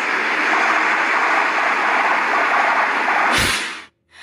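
Steady road-traffic noise, a continuous hiss of passing vehicles. It ends with a short thump near the end.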